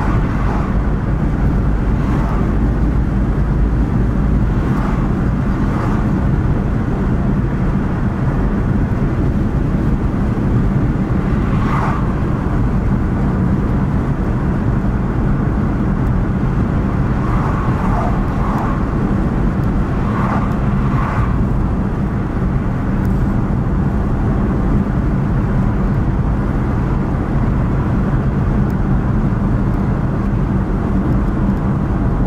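Car cabin noise while driving at road speed: a steady low engine hum under tyre and road rumble, with a few brief fainter sounds about twelve seconds in and again around eighteen to twenty-one seconds.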